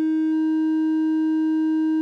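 Synthesizer triangle wave from an Intellijel Dixie VCO, amplified and offset through a Circuit Abbey Invy attenuverter so that it clips at both ends. It sounds as a steady, buzzy mid-pitched tone.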